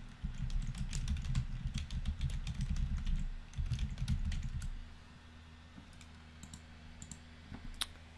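Typing on a computer keyboard: a quick run of key clicks for about five seconds, then only a few isolated clicks near the end.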